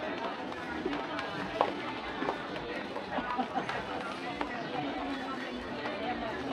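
Indoor shopping-mall hubbub: several shoppers' voices talking at once in the background, none standing out, with a few faint clicks.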